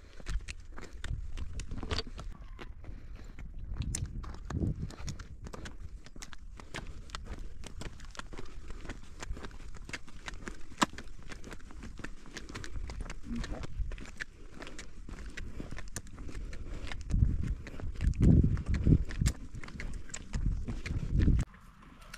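A donkey's hooves clip-clopping on a paved road alongside a person's footsteps, an irregular run of small knocks. Low rumbling buffets on the microphone swell louder near the end.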